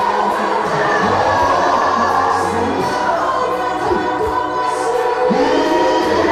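A gospel choir and congregation singing a song together in full voice, without a pause.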